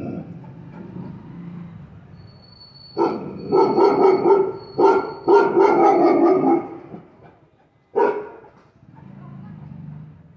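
Large mastiff-type guard dog barking: a run of loud barks from about three to nearly seven seconds in, then one more about eight seconds in. This is alarm barking at an intruder it has spotted.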